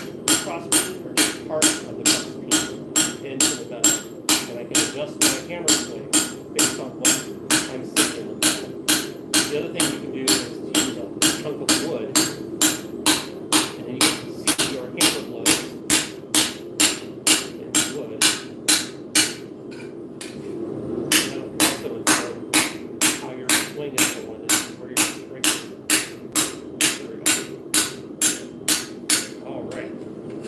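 Hand hammer striking a flat steel plate on a steel anvil in a steady rhythm of about two blows a second, each blow ringing high. The blows break off briefly about two-thirds of the way through, then resume and stop just before the end.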